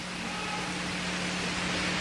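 Steady hissing background noise with a low steady hum underneath, slowly growing louder: the room and recording noise of the lecture during a pause in speech.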